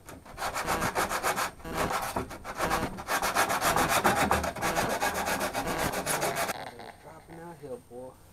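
Fiberglass-and-resin speaker pod being sanded by hand, sandpaper rubbed in quick, even back-and-forth strokes; the scrubbing stops about six and a half seconds in.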